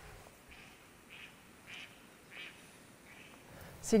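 Faint bird calls repeated five times at an even pace, a little over half a second apart.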